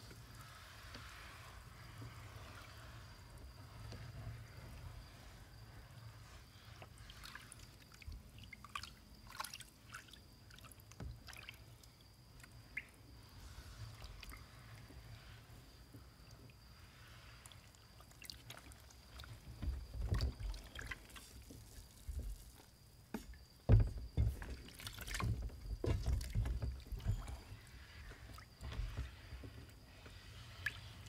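A rag wiping a steel plate submerged in a shallow tub of vinegar solution, the liquid sloshing and dripping as loosened mill scale is rubbed off. Small splashes come early; the sloshing grows louder in the last third, with one sharp knock about three-quarters of the way through.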